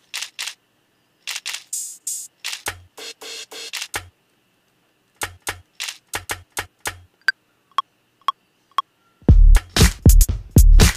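Sparse, irregular drum-machine sample hits from an Ableton drum rack: short sharp hi-hat and castanet-like clicks, some with a light low thump, and a few short pitched blips. About nine seconds in, a full loud drum loop with heavy kick drums starts.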